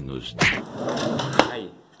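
Hand-held handling noise: a knock about half a second in, rustling, then a sharp click just before a second and a half. A man says a short 'aí' near the end.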